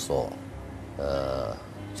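Male speech: a man says a short word, then draws out a steady, level-pitched hesitation sound ('eeh') for about half a second, a little after the first second.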